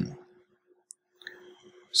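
A lull in speech: near quiet with a faint steady hum, broken by one small, sharp click about a second in and a couple of fainter ticks after it.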